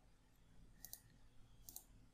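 Two faint computer mouse clicks, about a second apart, over near silence.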